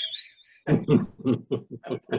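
Hearty laughter: a high squealing rise at the start, then a rapid run of short 'ha' bursts, about five a second.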